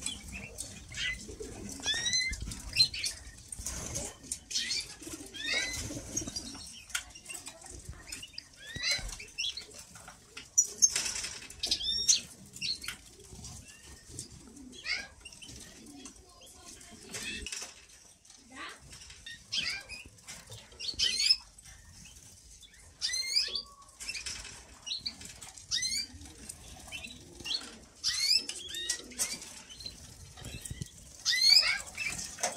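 A room of caged canaries chirping: many short, high, sweeping call notes scattered throughout, with wings flapping and rustling as birds flit about their wire cages.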